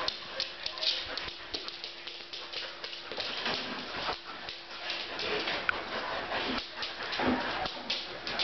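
Two Samoyeds playing tug-of-war over a rope toy: scuffling with many short clicks and scrapes, and a few brief dog vocal sounds in the second half.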